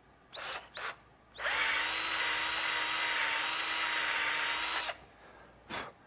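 Cordless drill spinning a rod-building reamer to open up the bore of a reel seat. Two quick trigger blips come first, then a steady run of about three and a half seconds with an even whine that cuts off suddenly.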